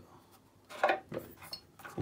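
A few light metallic clinks and knocks in the second half, from the tailstock of a Parkside wood lathe being shifted and locked on its bed; the tailstock has noticeable play.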